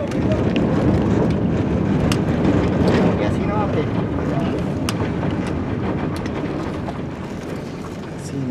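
Car driving, heard from inside the cabin: steady road and engine noise with wind buffeting the microphone, and faint voices underneath.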